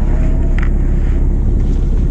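Steady low drone of the fishing boat's engine running, with wind on the microphone. A single light click about half a second in, from the plastic food container lids being handled.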